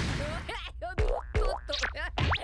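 Springy, rubbery cartoon sound effects over background music: a series of bending pitch glides broken by two sharp hits about a second in.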